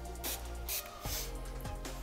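Two quick spritzes of a pump-spray bottle of facial hydrating mist, about half a second apart, over background music.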